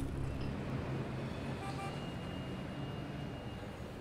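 Distant city street traffic: a steady hum of cars, with a faint short horn toot just under two seconds in. A low music chord fades out in the first half second.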